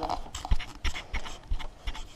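Soft thumps and rustling from a plush toy being bounced against the camera, about three bumps a second.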